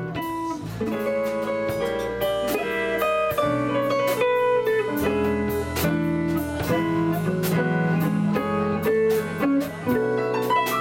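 A small band playing live, with archtop electric guitar to the fore over upright bass, drums and stage piano: a steady run of notes with regular light cymbal strokes.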